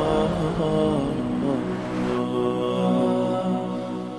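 Background vocal music: a chanted voice holding long, slightly wavering notes, moving to a new note about halfway through and beginning to fade near the end.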